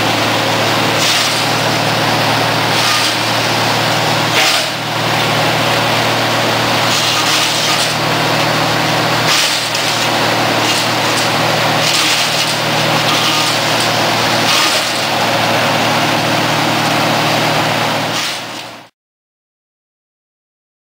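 Woodchuck WC-12 wood chipper running steadily at speed, with repeated louder hissing surges as brush is fed in, chipped and blown out the discharge chute. It cuts off suddenly near the end.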